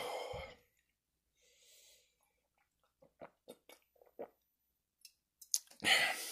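A man gulping soda from a glass bottle: a run of about six quick, faint swallows, then a louder breath out near the end.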